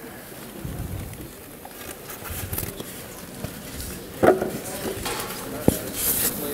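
Faint rustling and hissing as a rubber balloon is pushed down into a bucket of boiling liquid nitrogen. A short voice comes about four seconds in, and a sharp click near the end as a lid is set on the bucket.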